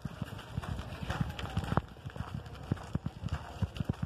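Bicycle clattering over a broken, rough road: an irregular run of knocks and rattles, several a second.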